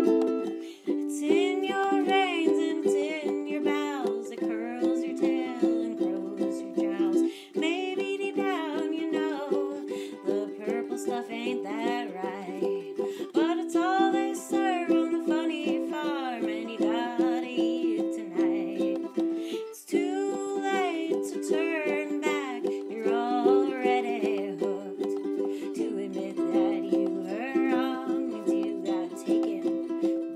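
A ukulele strummed as a steady folk accompaniment, with a woman singing phrases over it.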